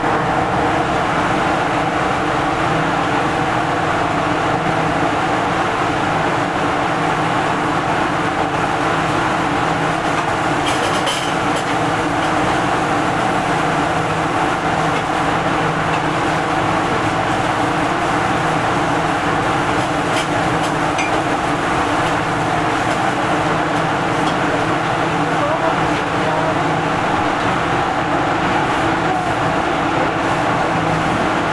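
Steady roar of a commercial gas wok burner at high flame, together with the hum of the kitchen's exhaust hood fan. A brief metallic clatter comes about eleven seconds in.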